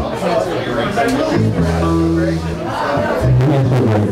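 Live electric rock band on amplified bass and guitars playing a few long held low notes that change pitch every second or so, with crowd chatter and voices over them.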